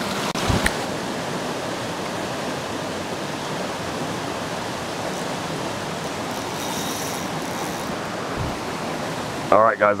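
Creek water rushing steadily over rapids and a small waterfall. A couple of sharp clicks come about half a second in.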